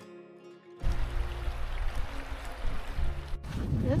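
Soft plucked-string music, then from about a second in the rush of a fast river under a footbridge, with wind buffeting the microphone. It breaks off briefly near the end before a voice begins.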